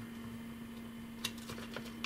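A faint steady hum, with a few small clicks in the second half as an alligator clip is taken off a battery lead.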